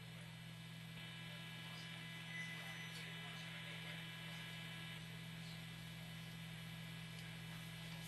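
Quiet, steady electrical hum and buzz over faint hiss in the broadcast audio, with no distinct events.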